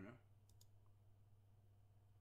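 Two quick, faint computer mouse clicks about half a second in, over a steady low hum; otherwise near silence.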